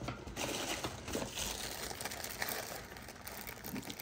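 Light rustling of plastic packaging and scattered small clicks as school supplies are handled on a table.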